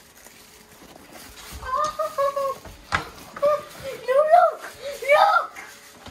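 A child's high-pitched voice making several short sounds without clear words, with a single sharp click about three seconds in.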